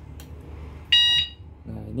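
A motorcycle alarm siren gives one short, high-pitched beep about a second in, answering a press of the alarm remote to switch the system on.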